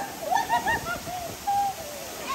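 Women's short, high-pitched squeals and laughing calls over the steady rush of a small waterfall.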